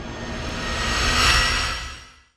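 Whoosh sound effect from an intro sting: a rushing noise with a low rumble that swells to a peak about a second and a half in, then fades out.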